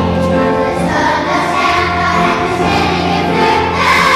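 Children's choir singing with instrumental accompaniment; the voices come in about a second in, over the instrumental introduction.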